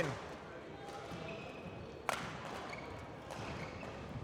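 A badminton racket strikes a shuttlecock once, a sharp crack about two seconds in, with faint squeaks of players' shoes on the court floor and a few lighter ticks near the end, in a large echoing sports hall.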